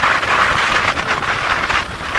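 Wind rush and road noise from riding an open two-wheeler at speed on a highway, a fluctuating steady noise with no distinct engine note.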